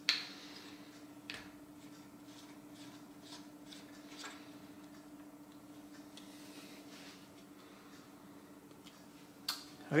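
Metal camera plate and Arca-Swiss clamp being handled and seated: a sharp click right at the start, another click about a second later, then a few lighter ticks, over a faint steady hum.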